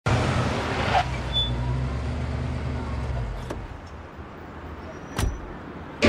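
A motor vehicle engine running with a low, steady hum that fades out over about three seconds, followed by a short sharp knock about five seconds in.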